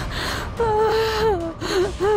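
A woman crying: a sharp breath in, then a long, high, wailing sob that drops in pitch at its end, followed by a shorter sob.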